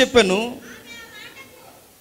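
A man's amplified voice ends a phrase on a drawn-out syllable that dips and then rises in pitch, fading out about half a second in; the rest is a pause with only faint hall echo and room tone.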